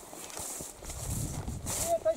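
Footsteps through tall grass, the stems brushing and swishing in a few soft, irregular rustles.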